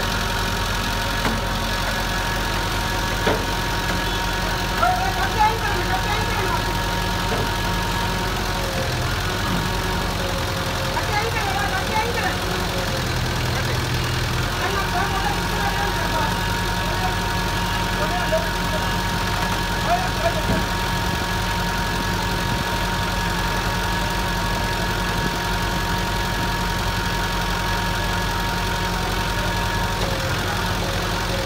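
Flatbed tow truck's engine running steadily at idle while the car sits on the tilted bed, with a steady high whine that drops out for several seconds near the middle. Voices talk intermittently in the background.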